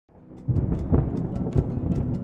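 Thunder rumbling and crackling over a music bed. It rises out of silence and reaches full strength about half a second in.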